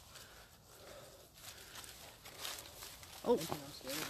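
Faint footsteps and rustling of brush and leaf litter as someone pushes through overgrown undergrowth, followed near the end by a voice exclaiming "oh".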